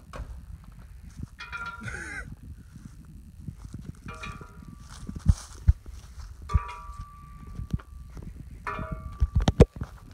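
A few sharp knocks and clacks, clustered near the end, over a steady low rumble, with short muffled voice-like sounds in between.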